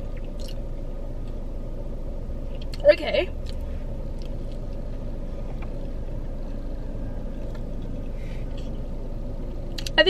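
Steady low hum inside a car cabin, with faint eating sounds from a burger being bitten and chewed. A short vocal sound comes about three seconds in.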